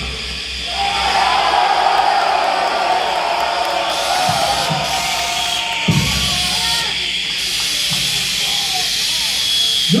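Harsh noise performance: a wavering, warbling wail through effects over dense hiss, with a few low thuds about halfway through and a steady high tone in the second half.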